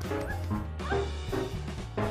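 Small dog yapping a few short times over background music with a steady bass beat.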